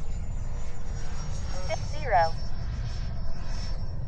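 Steady, faint whine of distant 90mm electric ducted-fan RC jets (Freewing F-22A Raptors) flying overhead, under a constant low rumble of wind buffeting the microphone.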